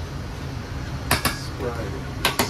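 Metal ladle clinking twice against a stainless steel pot a little over a second in, over a steady low hum of kitchen equipment.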